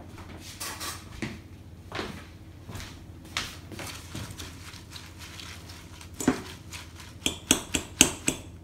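A hand tossing dressed lettuce leaves in a glass bowl: soft rustles of leaves with scattered light clicks and taps, and a quick run of sharper clicks near the end.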